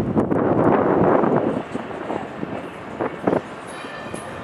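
City tram rolling past with a loud, even rumble that fades after about a second and a half into quieter street noise. Two short knocks come about three seconds in.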